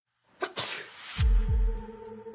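A person sneezes: a sharp onset and a hissing burst of under a second. Just past halfway, a deep low boom comes in and a music drone of steady held tones begins.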